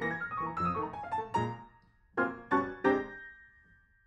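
Piano music: a quick run of notes stepping downward, a brief pause, then three chords about a third of a second apart, the last left ringing and fading away.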